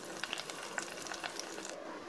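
Curry leaves, green chilli and vadagam sizzling in hot oil in a steel pan, with scattered small crackling pops.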